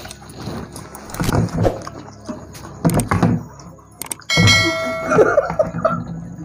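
Clicks and a ringing bell chime from an overlaid subscribe-button animation; the chime comes in suddenly about four seconds in and is the loudest sound. Under it are mouth noises from two people eating noodles off their plates without hands.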